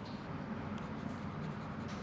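Steel ball-tipped burnisher rubbing and scraping over a copper etching plate, with a couple of faint ticks, over low steady room noise.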